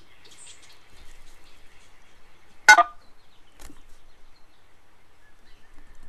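A single short, sharp noise a little under three seconds in, followed by a much fainter click, over faint room background.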